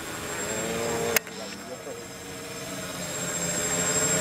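Remote-controlled multirotor's propellers humming steadily, growing gradually louder. A single sharp click comes about a second in.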